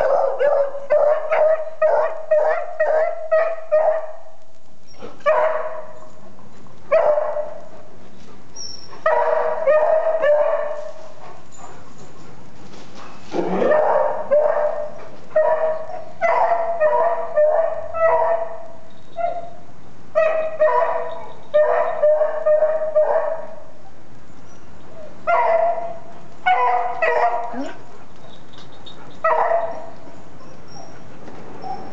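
Dog barking over and over in quick runs of several barks, with pauses of a second or two between runs.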